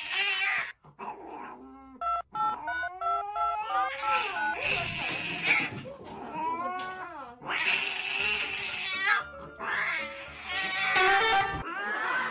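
A tabby cat in a plastic cone collar yowling while held, in several long drawn-out caterwauls that bend up and down in pitch. A short run of stepped musical notes plays about two seconds in.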